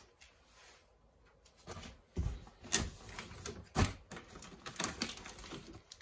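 Packaging being handled in a foil-lined insulated delivery box: the foil liner crinkling and wrapped packs of meat being shifted and lifted out. After a quiet start, there is a run of short knocks and rustles, the loudest about four seconds in.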